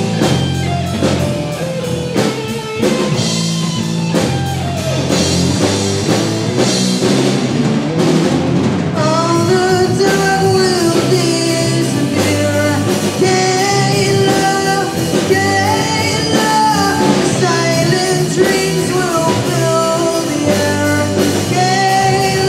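A live rock band plays: distorted electric guitars, a bass guitar and a Pearl drum kit played through Marshall amps. A sung lead vocal joins in from about nine seconds in.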